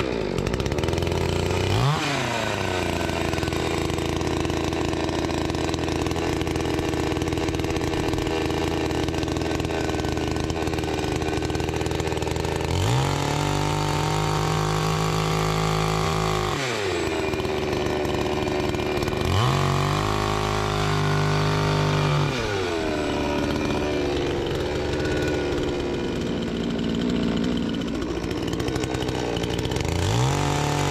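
A Dnipro-M chainsaw runs without a break while ripping a log lengthwise along the grain. Its pitch rises and falls several times as the saw is revved and loaded in the cut, with the biggest changes about 2, 13, 19 and 30 seconds in.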